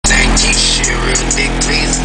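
Rap music played loud through a car sound system with three 15-inch Kicker CompVR subwoofers in the trunk, the deep bass strong and steady.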